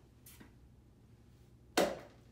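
A toy pig landing in a small bin: one sharp, short knock near the end, with a fainter brief sound about a third of a second in.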